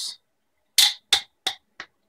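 Parts of a 3D-printed plastic clamp clicking against each other as they are handled: four short clicks about a third of a second apart, each fainter than the last, starting a little under a second in.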